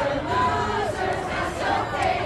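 A crowd of voices singing together, with held notes that slide up and down in pitch.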